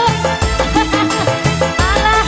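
Loud live band music, an instrumental passage: a deep, steady drum beat under a sliding melodic lead line.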